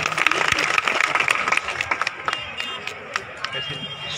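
Crowd clapping, dense at first and thinning to scattered claps over the last couple of seconds.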